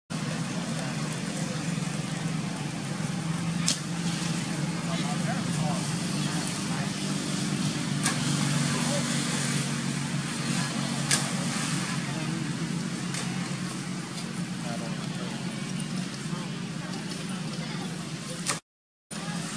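People talking over a steady low motor hum, with a couple of sharp clicks.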